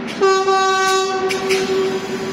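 Renfe S-451 double-decker electric commuter train arriving at the platform. About a quarter-second in, a loud steady high tone starts sharply, full for about a second and then thinning to a single note. A few sharp clicks run under it.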